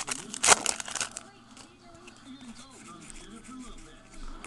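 Foil wrapper of a trading card pack crinkling and tearing as it is opened, with sharp crackles through the first second, the loudest about half a second in, then only soft handling.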